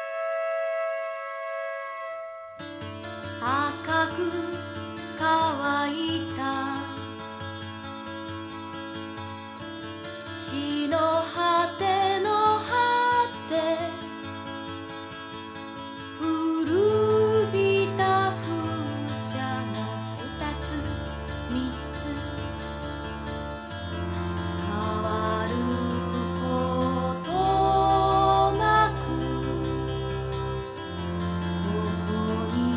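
Studio-recorded late-1980s Japanese pop song: a single held note, then the full arrangement with a steady bass line comes in about two and a half seconds in. The bass drops lower about two-thirds of the way through.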